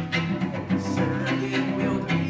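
Cello bowed in a lively run of low notes, the pitch changing every fraction of a second with crisp, rhythmic bow strokes.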